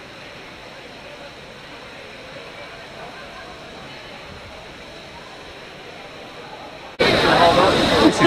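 Steady ambience of a crowded open-air thermal pool: distant bathers' voices and water. About seven seconds in it cuts sharply to much louder close-up sound of splashing fountain jets, with voices.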